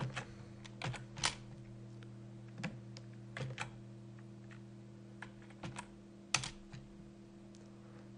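Sparse computer keyboard keystrokes: single clicks and short pairs spaced about a second apart, the loudest about six and a half seconds in, over a steady low hum.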